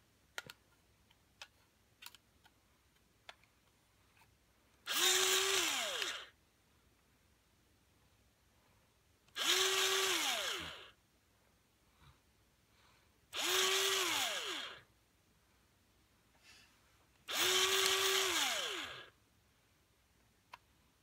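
Electric pencil sharpener running in four short bursts of one to two seconds as a pencil is pushed in, its motor whine dropping in pitch as it spins down after each one. A few light clicks and taps come before the first burst.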